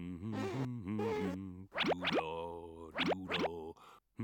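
Cartoon sound effects: two clusters of quick, steeply rising squeaky glides, about a second apart, over a tune of bending notes.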